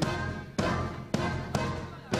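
A band playing, with drum-kit hits falling about twice a second over held chords.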